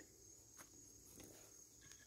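Near silence: a faint steady high-pitched insect trill, with a few faint clicks of fence wire being clipped onto a post insulator.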